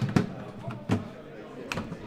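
Aluminium motorcycle side case knocking and clicking against its metal mounting rack on a BMW R1300GSA as it is lined up and locked on: about four sharp knocks spread over two seconds.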